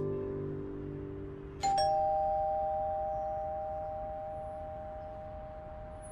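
Two-tone ding-dong doorbell chime, struck once about a second and a half in: a higher note then a lower one, both ringing on and slowly fading.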